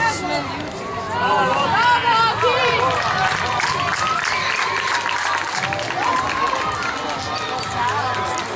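Several voices shouting at once over one another, many of them high-pitched children's voices, from players and spectators at a youth football match; the shouting is loudest and busiest from about one to three seconds in.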